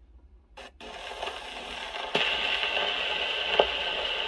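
Steel needle in the soundbox of a Columbia G-241 portable wind-up gramophone set down on a spinning 78 rpm shellac record with a short scrape about half a second in. It then runs in the lead-in groove with surface hiss and crackle that grows louder about two seconds in, and a couple of sharp clicks.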